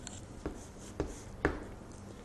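Chalk writing on a chalkboard: light scraping strokes with three sharp taps of the chalk about half a second apart.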